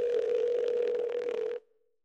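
A steady mid-pitched tone over a hiss, cutting off suddenly about one and a half seconds in.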